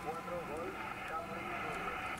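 Amateur radio transceiver receiving: steady band hiss through the speaker with the weak voice of a distant station coming through faintly, answering a call.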